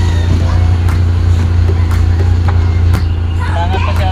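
Power window motor in a Kia Avella's driver door running with a steady low hum while the glass creeps along slowly, helped by hand: a sluggish window, blamed on a worn, dragging run channel.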